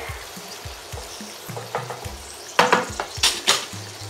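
Tomato sauce sizzling in a frying pan as it is stirred, with a few sharp scrapes and knocks of the utensil against the pan from about two and a half seconds in.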